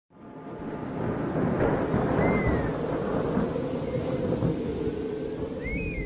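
Rumbling thunder with rain, fading in over the first second and dying away at the end. Over it there are a couple of faint high gliding tones, one about two seconds in and one near the end.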